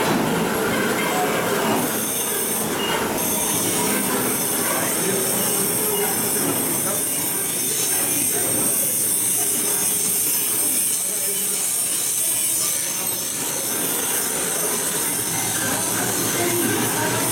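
Loud, steady mechanical running noise with a steady high-pitched whine over it, with voices faintly underneath.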